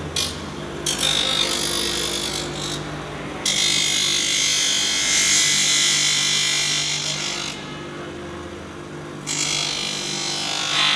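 Bench grinder running with a steady motor hum while a part is pressed against the wheel, giving several spells of loud grinding hiss. The longest runs from about three and a half to seven and a half seconds in.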